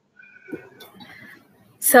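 Faint, indistinct low-level sounds over a video-call line, then a woman starts speaking just before the end.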